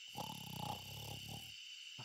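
A faint, rough snore lasting just over a second, dying away shortly before the end.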